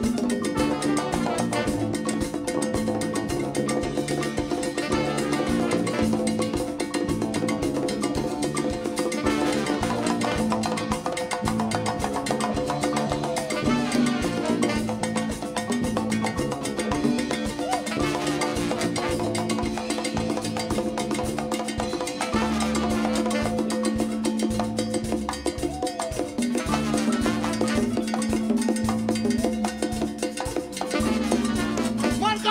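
A live Latin band playing an instrumental groove, with congas struck by hand over keyboard.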